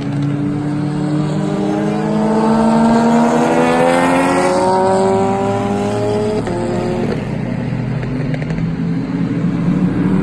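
Super GT race car engines accelerating hard through a wet corner, the note climbing steadily, then stepping down sharply about six and a half seconds in as a car shifts up, after which the engines run on at a more even pitch.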